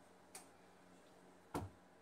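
A quiet room with a faint steady hum, broken by two light clicks: a soft one just after the start and a sharper, louder one about a second and a half in.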